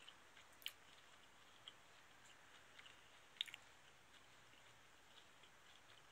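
Faint, wet chewing of a juicy mandarin orange, with small mouth clicks; two sharper clicks come under a second in and a little past three seconds in.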